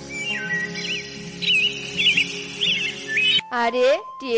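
Cartoon bird chirps, a run of short, quick, warbling high chirps, over background music with sustained chords. The music cuts off suddenly about three and a half seconds in and a voice starts speaking.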